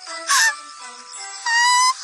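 Light background music, with a short loud burst of a woman's laughter about a third of a second in and a high-pitched excited squeal near the end.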